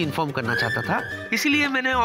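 A horse neighing, a quavering high-pitched whinny near the end, used as a comic sound effect over light background music.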